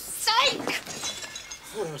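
Glass shattering with a sudden crash, a loud vocal cry over it, then a brief faint high tinkle of glass.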